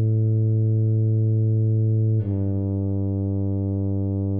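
Tuba sound from sheet-music playback holding a long, steady low note, then moving to a slightly lower sustained note about two seconds in.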